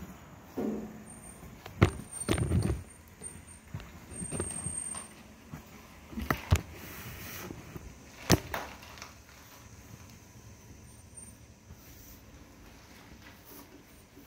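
A few sharp knocks and clunks of handling, the loudest about two seconds in and more near six and eight seconds in, as a handheld camera is moved about and set down; quieter after that.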